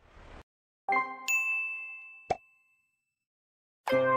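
Animation sound effects: two bright bell-like chimes about a second in, ringing out, then a short pop a little after two seconds. Music starts again right at the end.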